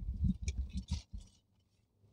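Muffled knocks and rustling for about a second, from a handheld camera being moved about as its holder settles into a car's driver's seat, with a few small clicks.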